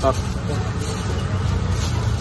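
Steady low rumble of outdoor street background noise, with faint voices in it.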